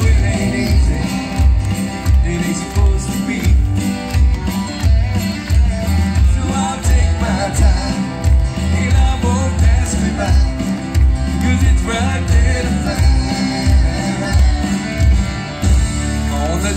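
Live country band playing an instrumental passage: a steady drum and bass beat with electric and acoustic guitars.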